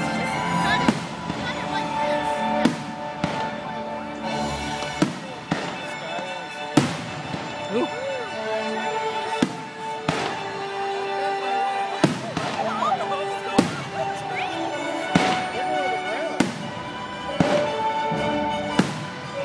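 Aerial fireworks shells bursting, about a dozen sharp reports spaced a second or two apart, over a concert band playing live with long held notes.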